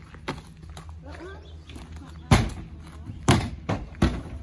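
A thoroughbred horse's hooves striking a horse trailer's rubber-matted loading ramp as it walks up into the trailer: a light knock early, then two loud thuds about a second apart in the second half and a softer one just after.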